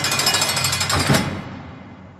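A sudden loud burst of fast, even rattling that runs for about a second, then drops away and fades out.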